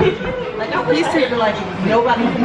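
Only speech: overlapping voices talking and chattering in a room.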